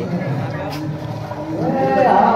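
Street-market hubbub of mixed voices. Near the end a long drawn-out call rises in pitch and leads into louder voicing.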